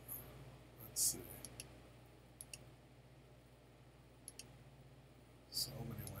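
A few sharp computer mouse clicks, the loudest about a second in and a couple more near the end, over a low steady hum.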